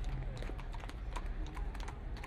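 Hooves of two walking horses clopping on asphalt, an irregular run of sharp clicks.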